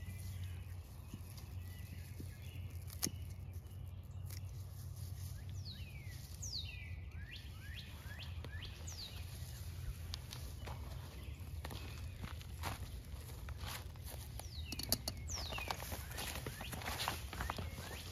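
Ashitaba leaves rustling and stems snapping with scattered short clicks as shoots are picked by hand, over a steady low outdoor rumble. A few short falling bird chirps come in partway through.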